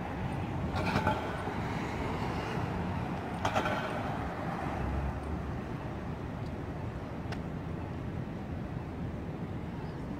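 Steady traffic noise of a city street, with a couple of short louder sounds about a second in and again a few seconds later.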